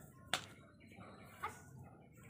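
Quiet background with one sharp click about a third of a second in and a fainter click about a second later.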